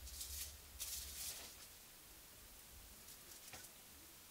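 Aluminium foil crinkling under the fingers as it is handled and worked free of its sheet: two short, faint rustling bursts in the first second and a half.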